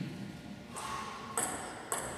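Table tennis ball bouncing: two sharp, ringing pings about half a second apart in the second half.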